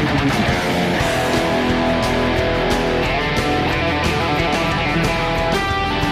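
Electric guitar playing a fast, continuous run of rapidly picked notes, done by hand to mimic the sound of an electric drill on the strings. A new run of notes enters near the end.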